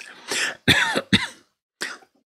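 A man's short, breathy vocal bursts, four in a row, unvoiced and without words, like coughs or breathy chuckles.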